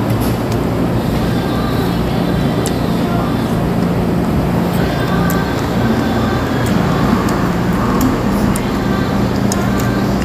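Steady background din of road traffic with a low hum, faint voices and music mixed in, and a few light clicks.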